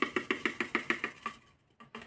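Rapid, even tapping, about ten taps a second, fading out about a second and a half in: a sachet of drink powder being tapped and shaken to empty it into a plastic bottle.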